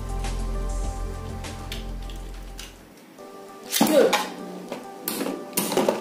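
Background music, with a handful of sharp clacks in the last two seconds or so as two battling tops, a metal Beyblade and a Nado top, strike each other in a clear plastic stadium.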